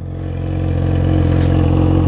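A Yamaha XJ6's inline-four engine idles steadily through a straight-pipe exhaust with the muffler removed.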